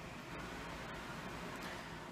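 Quiet, steady hiss of room tone with a few faint ticks.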